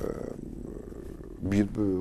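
A man speaking Ukrainian, who picks up again after a pause of about a second and a half. During the pause there is only a low, steady background sound.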